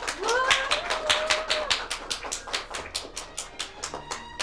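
A small crowd of guests applauding with quick, dense hand claps. Over the first second or so, a voice rises into one drawn-out cheer.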